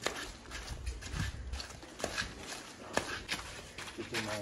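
Footsteps and scattered sharp knocks as a large metal cooking pot is carried by hand and brought down onto a stove burner, with clear knocks about two and three seconds in.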